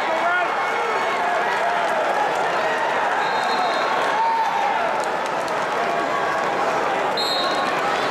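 Arena crowd of spectators, many voices talking and calling out at once at a steady level, with short high squeaks about three seconds in and again near the end.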